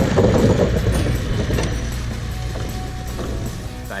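Nissan GQ Patrol 4x4 driving across an old timber bridge, its tyres running over the deck planks, loudest at first and fading as it moves away. Background music plays underneath.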